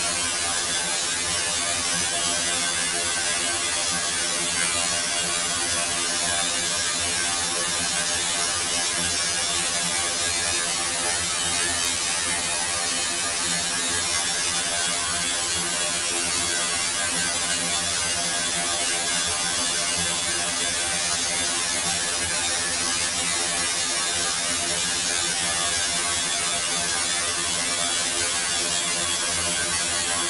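Computer-generated sound of the Rule 30 cellular automaton: a dense, steady buzzing drone of many held tones over a bright hiss, unchanging in level.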